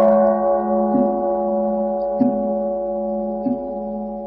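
Buddhist bowl bell, just struck between chanted verses, ringing on in several steady tones that fade slowly. Soft, regular knocks fall about every 1.2 seconds beneath the ring.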